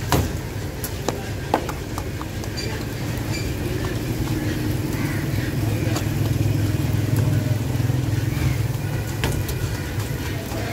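Street-stall ambience: a steady low engine-like rumble that swells through the middle and eases near the end, under faint background voices. Sharp metal clicks of a steel spatula against the iron griddle come in the first two seconds and again near the end.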